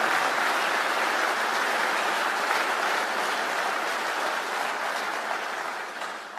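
Large seated audience applauding steadily, the clapping dying away near the end.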